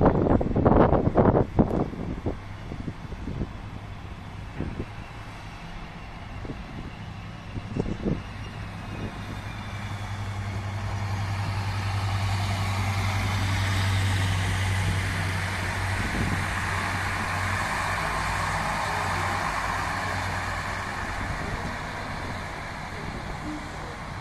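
Diesel railcar (erixx Alstom Coradia LINT) running past on the track: a steady low engine drone with rolling-wheel hiss, building as it draws level about halfway through, then easing off as it moves away. Several loud irregular knocks come in the first two seconds.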